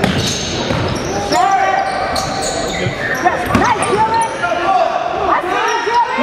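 Basketball game play on a gym's hardwood court: sneakers squeaking in short, high chirps, a basketball bouncing with sharp thuds (a strong one past the middle), and players' voices calling out, all echoing in the large hall.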